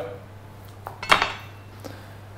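A chef's knife set down after filleting fish, giving one sharp metallic clatter about a second in, with a faint click or two around it, over a steady low hum.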